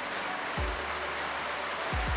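Steady rain falling, an even hiss, under soft background music with a couple of low beats.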